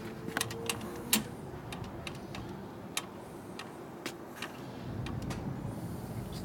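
Irregular sharp clicks and light metallic ticks as the clutch lever on a Harley Sportster's handlebar is worked, over a low steady background hum.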